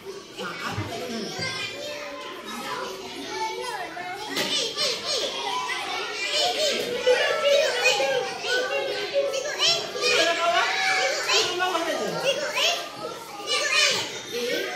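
Young children's voices talking and calling out over one another, with one boy speaking up in a lively voice.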